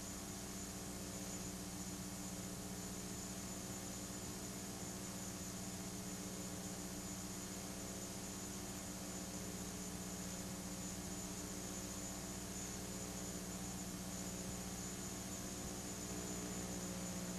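Faint steady electrical hum with hiss, the background noise of an old recording, unchanging throughout.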